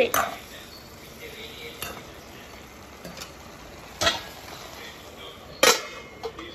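Metal spatula stirring vegetables in a metal pan, tapping the pan a few times over a faint sizzle; near the end a louder clank as the metal lid is set on the pan.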